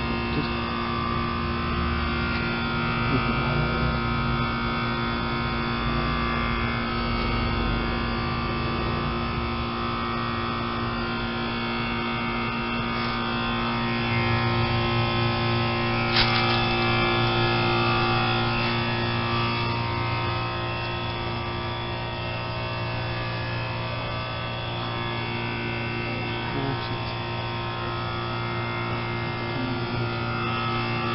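Heat pump outdoor unit running with a steady electrical hum and buzz, with a single sharp click about halfway through. This is a 2005 Duro Guard that the owner thinks is malfunctioning: it seems stuck in defrost and he doesn't know why.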